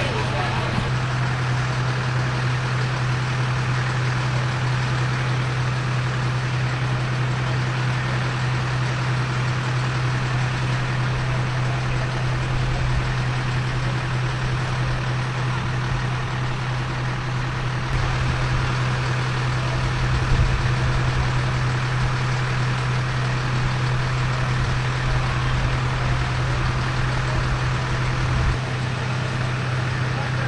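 Steady low drone of idling emergency-vehicle engines, with indistinct voices in the background.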